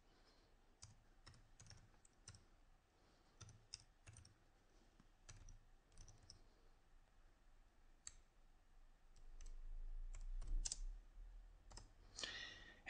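Faint, sparse keystrokes on a computer keyboard: single clicks, often a second or more apart. Near the end there is a soft low rumble.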